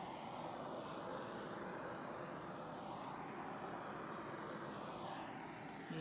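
Handheld butane torch running with a steady hiss, held over wet acrylic pour paint to pop surface bubbles. It eases off near the end.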